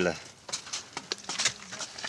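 Faint wet lip clicks of someone sucking fresh agave juice off a palm, with a short low hum of a voice about halfway through.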